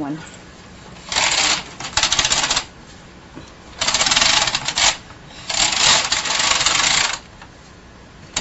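Bond hand knitting machine's carriage pushed across the needle bed to knit rows: a clattering rasp with each pass, three passes of one to one and a half seconds separated by short pauses.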